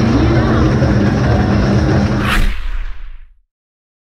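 Busy arcade noise, with game machines sounding and voices in the background, then a whoosh a little over two seconds in as the sound fades quickly to silence near the end.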